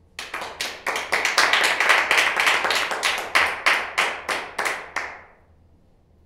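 Hands clapping: a quick run of sharp claps, about four or five a second, slowing slightly near the end and stopping about five seconds in.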